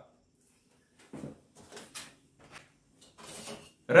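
A few short, soft knocks and scuffs of handling and movement, spaced irregularly over about three seconds after a second of near silence.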